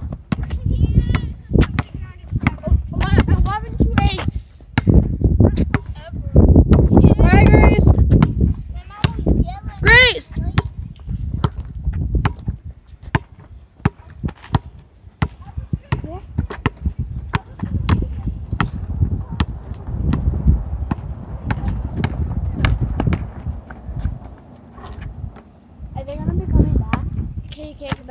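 Basketball bouncing on an asphalt court, with many sharp, irregular thuds as it is dribbled and shot.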